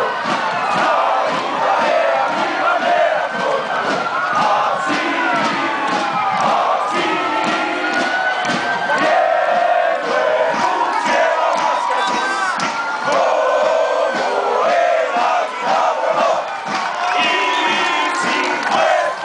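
A large crowd cheering and shouting, many voices overlapping, with high calls that rise and fall.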